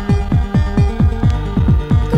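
Makina dance music from a 1990s club session on cassette: a fast, steady kick drum with a sustained synth line over it.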